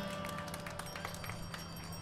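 Quiet stage sound between songs: a sustained instrument note that fades out about a second in, with scattered light taps and clicks over a steady low hum from the sound system.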